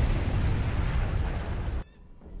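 Bomb explosion: a loud, deep blast of noise that carries on and then cuts off suddenly near the end.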